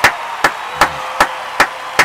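One person clapping hands at a steady pace, about two and a half claps a second.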